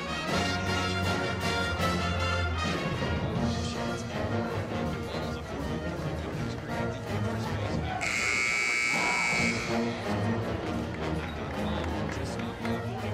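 Pep band brass playing in the arena during a timeout. About eight seconds in, the arena horn sounds, one steady buzz lasting about a second and a half, signalling the end of the timeout.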